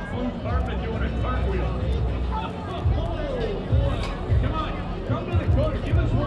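A crowd of waiting fans chattering, many voices overlapping in a steady babble, with irregular low rumbles underneath.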